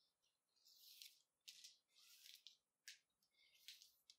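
Faint rustling swishes of thin paracord strands being pulled through and snapped into the slots of a foam kumihimo disc, about five short bursts a second or so apart.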